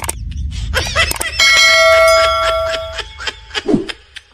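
Subscribe-button sound effects: a mouse click, then a bell notification chime that rings steadily for about a second and a half and cuts off.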